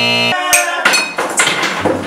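A held musical tone cuts off suddenly just after the start, followed by a clatter of knocks and clinks of ceramic mugs against a wooden table.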